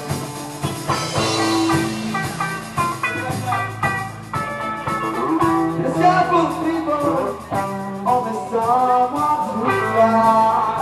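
Live rock band playing: electric guitars over a drum kit. A singing voice joins the band about halfway through.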